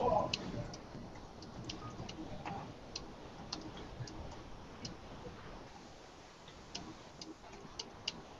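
Computer keyboard being typed on: irregular, light key clicks, with a brief louder noise right at the start.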